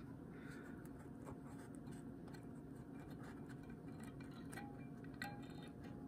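Faint handling sounds: a few light clicks and scrapes of a small stainless-steel valve bore plug against an aluminium transmission valve body as it is fitted, over quiet room tone.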